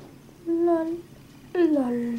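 A person singing a wordless "la, la, la" tune: one short held note about half a second in, then another starting at about one and a half seconds that slides down and is held.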